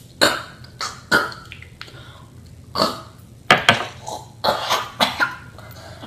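A boy coughing repeatedly, in a string of short sharp coughs that come in clusters, with some throat clearing.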